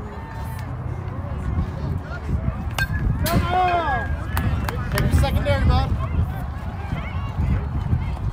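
Wind rumbling on the microphone throughout. About three seconds in, a bat hits a softball with a sharp knock, and spectators break into shouts and cheers, with more yelling a couple of seconds later.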